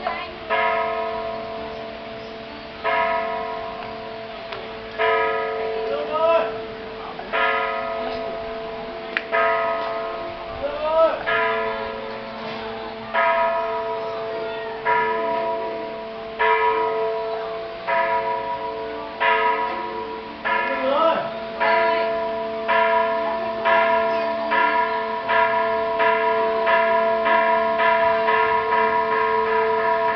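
A bell struck over and over, each stroke left to ring on into the next. The strokes come slowly at first, about every two seconds, then quicken steadily to about two a second near the end.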